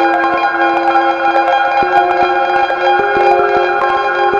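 Eurorack modular synthesizer playing ambient music: bell-like tones over a held low note that steps up in pitch about two seconds in and again near three seconds, with short struck notes throughout.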